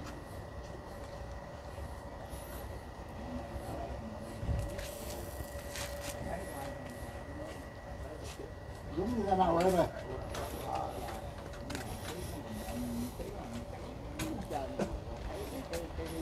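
Quiet outdoor background: a low rumble with a faint steady hum, and a person's voice briefly about nine seconds in.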